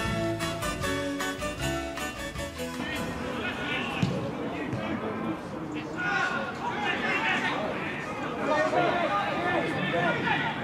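Instrumental music with a beat that cuts off about three seconds in, giving way to outdoor match-side sound: players and spectators shouting and talking across a football pitch, with a single sharp knock about four seconds in.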